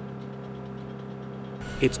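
Steady drone with a few held low tones: jet-engine cabin noise inside the cargo hold of a C-17 transport plane in flight. A man's voice starts near the end.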